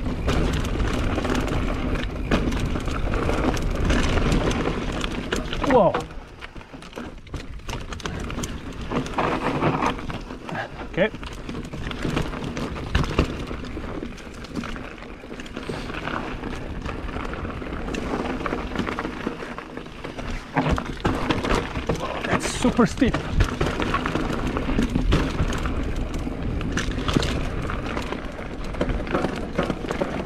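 Mountain bike riding a dry dirt singletrack: a steady wash of tyre and trail noise with many rattles and knocks from the bike, and wind on the microphone. The rider's breathing and a groaned "God" come through late on.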